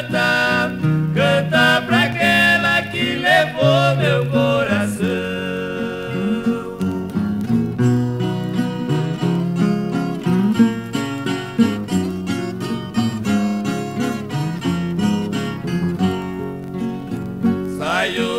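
A 1963 Brazilian música caipira toada playing from a record: an interlude between sung verses, carried by plucked acoustic guitars.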